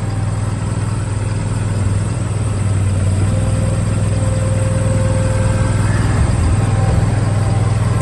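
Ford 6.7-liter turbo-diesel V8 idling steadily, with a strong low, even hum, heard from beneath the truck.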